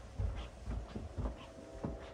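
Footsteps climbing the last carpeted stairs and walking onto the floor above: a few dull, uneven thumps. A faint steady hum comes in about a second in.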